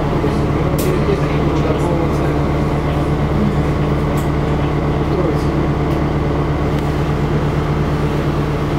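Cabin sound of a NefAZ-5299-40-52 city bus under way: a steady engine and drivetrain drone with a strong low hum, even in level throughout.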